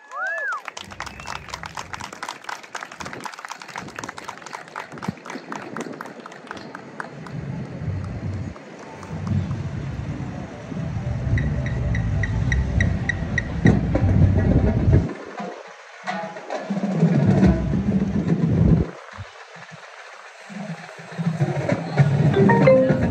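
Indoor percussion ensemble playing its show: fast snare and drum strokes at first, then a heavier low-pitched passage with a quick run of high mallet notes, easing off twice near the end.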